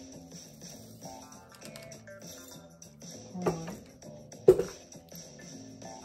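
Background music with a melody of plucked-string notes. Two short knocks about three and a half and four and a half seconds in, the second the loudest.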